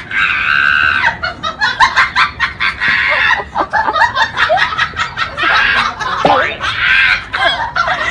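Shrill laughing and shrieking from several people, choppy and high-pitched.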